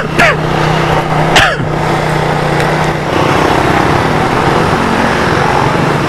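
Motorcycle engine running while riding, with steady wind and road noise. About halfway the engine note drops lower and becomes more pulsing, as when the bike slows.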